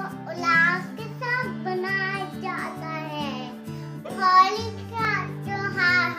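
A young girl singing over a backing music track whose low notes change about every half second.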